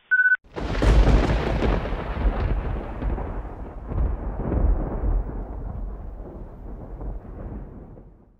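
A short electronic alert beep ends just as the sound opens. Then, about half a second in, a thunder clap hits sharply and rumbles on, fading slowly over several seconds.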